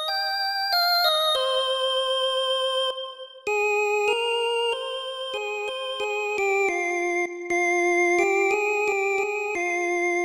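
Yamaha PSR arranger keyboard playing a slow, single-note synth lead melody in F minor, one held note after another with a slight vibrato. There is a short break about three seconds in.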